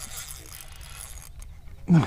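Steady low rumble and faint hiss of outdoor background noise, with a man's voice breaking in loudly near the end.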